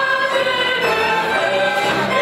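Folk ensemble singing a folk song in chorus, several voices holding notes over instrumental accompaniment.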